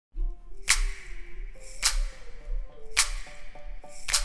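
Electronic dance music, the opening of a future bass remix: a low bass and a soft synth melody, with a sharp percussion hit about every second.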